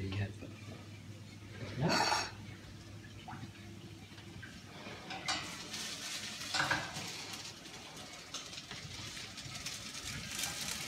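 Noodles and vegetables sizzling as they pan-fry in oil, with a utensil stirring and scraping in the pan; the sizzle and scraping grow denser about five seconds in. A brief louder sound comes about two seconds in.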